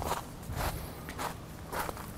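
Footsteps on a dirt trail, about four even steps a few tenths of a second apart, as a man walks up and comes to a stop.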